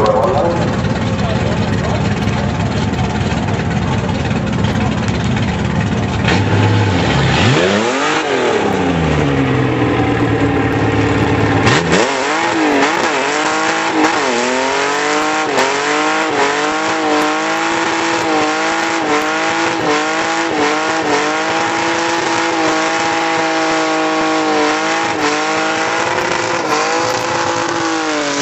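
Holden LJ Torana doing a burnout. The engine revs up and drops back once about eight seconds in. From about twelve seconds in it is held at high revs with small wavers while the rear tyres spin and smoke, then the revs fall away at the very end.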